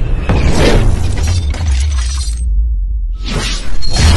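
Intro sound-design effects over a deep bass drone: loud whooshes and crash-like hits. About two and a half seconds in, the high end cuts out for under a second, then a rising whoosh sweeps back in.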